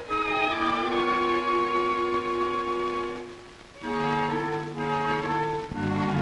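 Orchestral film score: a string section holds sustained chords, thins out briefly about three and a half seconds in, then moves to a new, lower chord.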